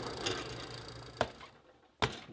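Faint handling noise as a lump of clay is weighed on a small dial scale, fading away, with one sharp click a little over a second in; then the sound drops out almost entirely.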